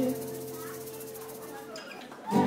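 Acoustic guitar's final chord of the song ringing out, a few held notes that slowly fade and die away near the end.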